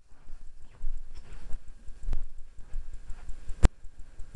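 Irregular clicks and knocks over a low rumble, with one faint sharp click about two seconds in and a louder one about three and a half seconds in.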